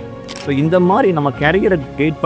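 A voice over background music, with a sharp click just after the start.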